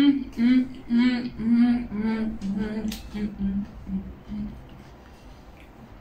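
A woman humming a string of short notes that step down in pitch, stopping about four and a half seconds in.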